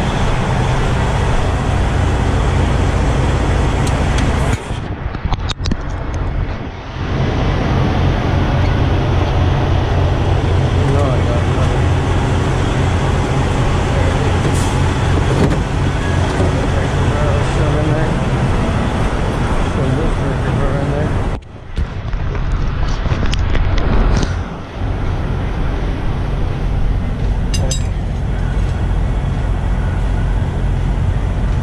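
A heavy truck's diesel engine idling close by, a steady low rumble that is briefly muffled twice, about five seconds in and again about twenty-two seconds in.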